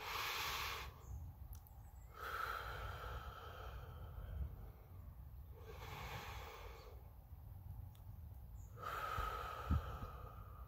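A man breathing slowly and deeply close to the microphone, a relaxation exercise: about four separate breath sounds, each one to two seconds long, with short pauses between.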